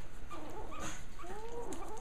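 Faint whimpers from Japanese Chin puppies: a short one about half a second in and a higher, rising-and-falling one near the end.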